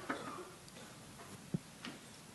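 Quiet room tone from a live handheld microphone, with a single short, dull knock about one and a half seconds in and a fainter click near the end: handling noise as the microphone is moved.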